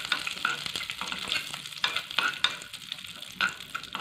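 Cashew nuts sizzling as they fry in ghee in a non-stick pan while being stirred, with repeated short scrapes and clicks of the stirring utensil against the pan.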